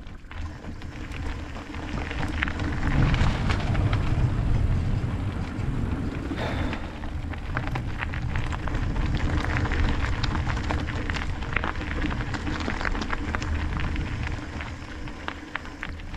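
Mountain bike tyres rolling over loose gravel, with many small clicks and rattles from stones and the bike, over a steady low rumble of wind buffeting the action camera's microphone. It grows louder about three seconds in.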